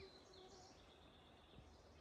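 Near silence: faint outdoor ambience in woodland.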